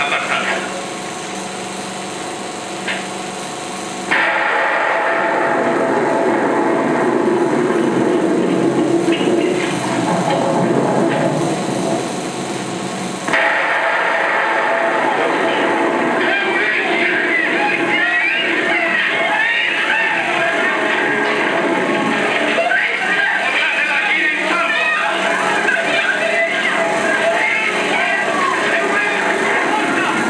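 Film soundtrack from a 16mm print: music score, growing louder about four seconds in, then a crowd of men shouting and clamouring over it from about thirteen seconds in.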